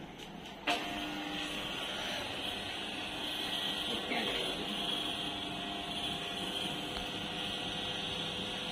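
Electric motor of a motorized tilting chiropractic table switching on with a click under a second in, then running steadily as it raises the table from flat toward upright.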